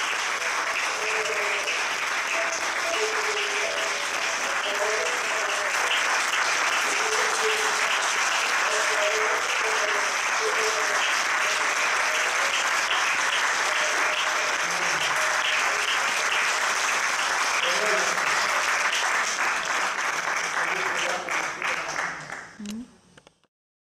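Theatre audience applauding steadily, a dense mass of clapping, with voices heard faintly over it.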